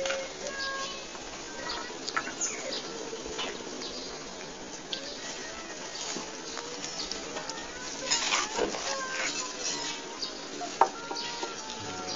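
Steady hiss and crackle of a low-quality handheld recording, with scattered clicks and taps from handling, and a few brief faint high tones.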